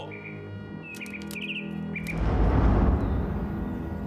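A caged songbird chirping a few short calls, then about two seconds in a loud, deep rushing swell, over sustained music.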